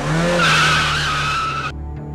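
SUV tyres squealing in a skid: a loud, sustained screech over low engine noise that cuts off suddenly shortly before the end.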